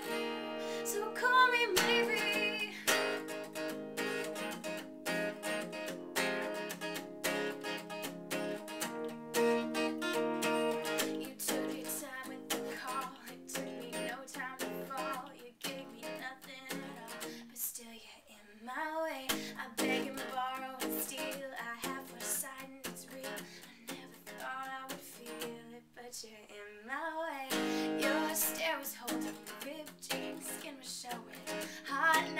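Female voice singing a pop melody over a strummed steel-string acoustic guitar played with a pick and capo. The strumming drops back for a few seconds past the middle, leaving the voice almost alone, then comes back in.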